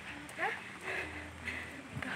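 Faint, scattered voices in the background over a low steady hum, in a pause between close conversation.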